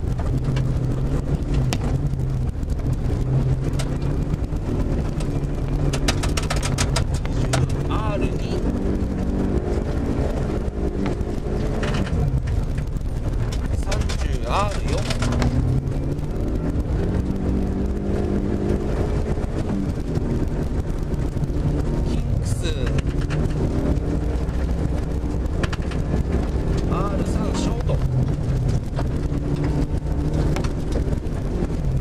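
Rally car's engine heard from inside the cabin, driven hard on a snowy special stage, its revs rising and falling repeatedly through the gears over steady road and snow noise.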